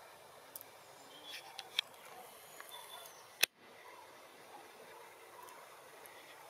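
Faint, distant calls of a migrating flock of common cranes, a few short calls scattered over a quiet outdoor background with some brief high chirps. One sharp click about three and a half seconds in.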